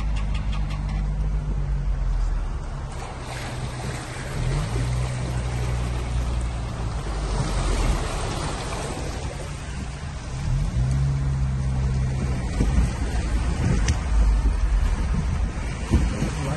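Car engine running and tyres wading through floodwater, heard from inside the car's cabin. The engine note rises and settles twice, and a rush of water spray swells about halfway through as another car passes close alongside.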